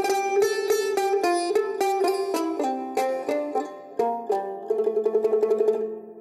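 Background music: a bright plucked-string instrumental tune, single notes picked one after another, turning to a quick rapid-fire tremolo on held notes in the second half and fading out at the end.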